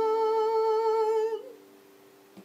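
A man's singing voice holding one long sustained note with a slight vibrato, which stops abruptly a little over a second in. A faint steady tone lingers after it.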